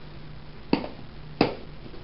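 Two sharp plastic clicks, about 0.7 s apart: the snap-on lid of a plastic enclosure being pressed down and latched into place. A faint low steady hum underneath.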